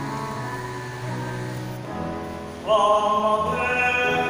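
Instrumental accompaniment plays sustained notes, then a little over halfway through a male voice enters singing at the microphone and becomes the loudest sound.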